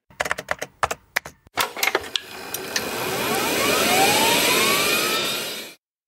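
Segment-transition sound effect: a quick run of clicks and taps, then a whoosh with rising whistling tones that swells for about four seconds and cuts off suddenly.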